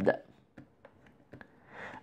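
A few faint light taps of a pen stylus on a graphics tablet while short marks are drawn, then a soft breath drawn in near the end. The last of a spoken word trails off at the very start.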